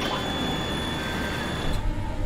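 Sound effect of a jet airliner in flight: a rushing noise with a steady high whine. The whine and rush stop near the end, leaving a low rumble.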